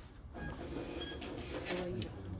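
A small counter printer running, with muffled voices in the background.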